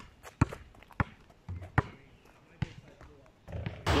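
A basketball dribbled on an outdoor tarmac court: a run of sharp, separate bounces, about one every half second to a second.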